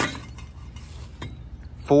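Metal aerosol spray paint cans clinking lightly against each other as a hand handles them, with a single sharp click about a second in.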